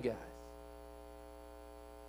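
Steady low electrical mains hum with a ladder of faint overtones above it, as the last word of a man's speech dies away at the start.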